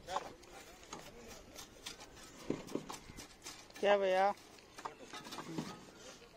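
Outdoor work sounds: scattered light clicks and knocks, with a short, loud pitched call about four seconds in.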